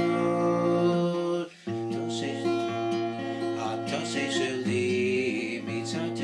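Acoustic guitar with a capo, chords strummed and picked and left ringing; the playing breaks off for a moment about one and a half seconds in, then resumes.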